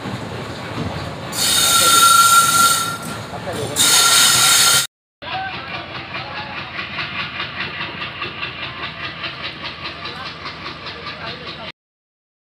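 Train approaching with two loud blasts of the locomotive's horn, a high steady tone. After a break, a train rolls past with a rhythmic clatter of wheels over the rail joints.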